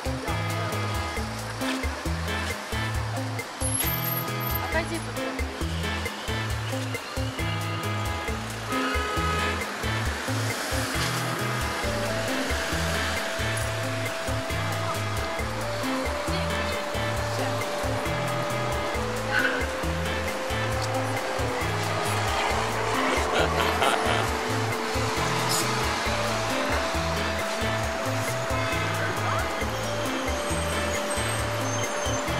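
Background music with a stepping bass line and long held notes, over a steady rush of noise that swells twice.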